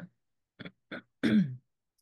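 A person clearing their throat once, a short sound with a falling pitch a little past the middle, preceded by two faint mouth clicks.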